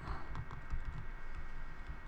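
Pen stylus tapping and scratching on a tablet screen in quick, irregular strokes as a word is handwritten.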